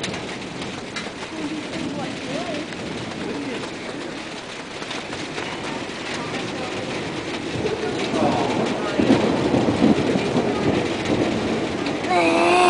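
Thunderstorm noise: a steady rushing sound with thunder rumbling, swelling louder over the last few seconds.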